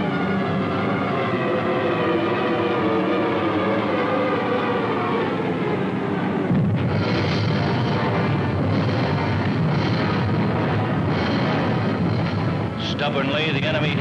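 Dramatic orchestral film score. About halfway through, a dense low rumble of bomb explosions joins the music and carries on under it.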